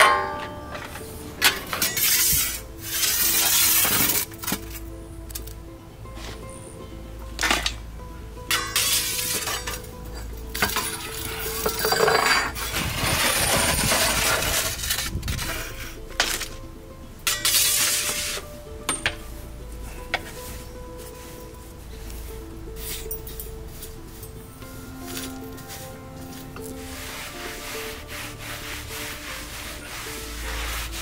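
Ash and charcoal chunks being scraped off a wood-fired oven floor and tipped into a galvanized metal bucket: several bursts of scraping a second or two long with clinks of charcoal against metal, over steady background music.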